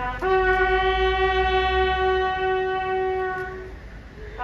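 Bugle sounding a funeral salute call: a short lower note, then a long, steady higher note held for about three and a half seconds.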